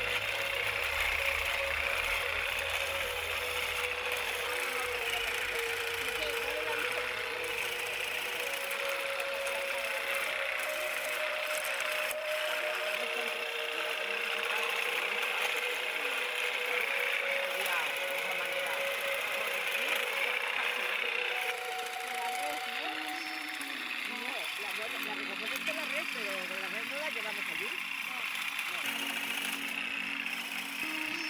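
Motor of a pole-mounted olive harvester (vibradora) running steadily as its head shakes the olive branches, with music underneath.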